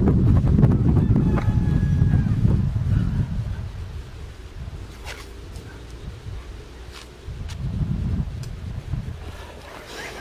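Wind noise on the microphone, a low rumble that is heaviest for the first three seconds and then eases off, with a few faint ticks later on.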